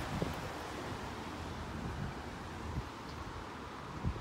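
Steady outdoor background noise with wind rumbling on the microphone.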